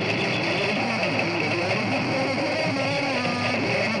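Dense, steady din of a live crowd and band: many voices and singing over music, with no pause.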